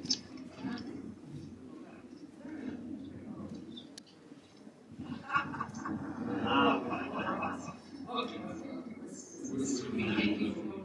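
Indistinct speech: a tour guide talking to a small group, with a clearer, louder stretch of voice from about five to eight seconds in.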